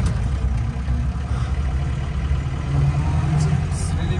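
Engine and road noise of a 1994 Mahindra jeep heard from inside its cab while driving, a steady low drone.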